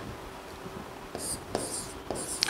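Chalk scratching on a blackboard as a number is written, in a few short strokes in the second half.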